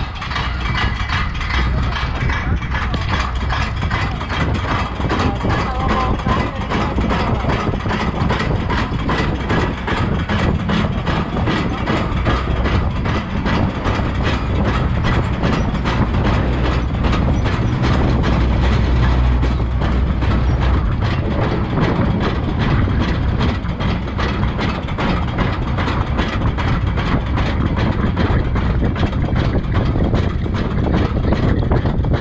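Roller coaster train climbing the lift hill: a steady low rumble from the lift with a rapid, even run of clacks from the anti-rollback.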